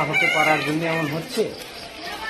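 A rooster crowing behind a man's speaking voice.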